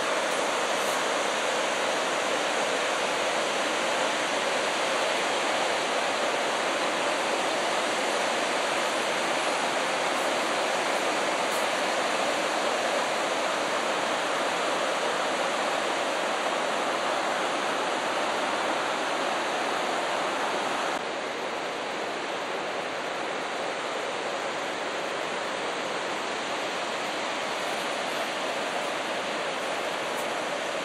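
Water jetting from the spillway gates of the Cahora Bassa dam and plunging into the gorge below: a steady, even rush that drops a little in level about two-thirds of the way through.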